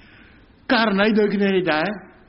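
Only speech: a man speaking Khmer into a bank of microphones, one phrase starting about two-thirds of a second in after a short pause.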